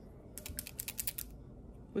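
A quick run of about a dozen light clicks and taps from small nail-art tools being handled by fingers with long nails, over roughly a second starting a third of a second in.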